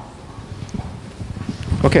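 Faint, irregular light knocks and rustling as a handheld microphone and a sheet of paper are handled, followed near the end by a man saying "Okay".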